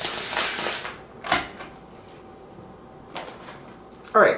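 Tarot cards handled and shuffled by hand: a burst of card rustling in the first second, then a short sharp tap, and a softer one near the end.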